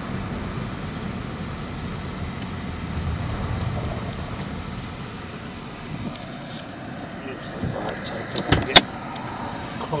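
Car cabin noise while driving: a steady low rumble of road and engine that eases off about halfway. Near the end come a few knocks and one sharp click, the loudest sound, from the camera being handled.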